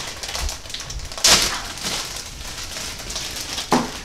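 Crinkly plastic snack wrapper being handled and opened: steady fine crackling, with one louder crackle about a second in and a sharp click near the end.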